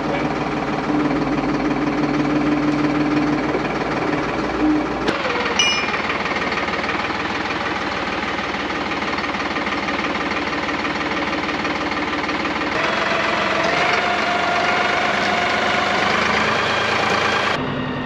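Solis 50 tractor's diesel engine running with a steady knocking clatter while the tractor drives with a loaded bulk bag raised on its front loader. The sound changes abruptly twice as the view switches between inside and outside the cab.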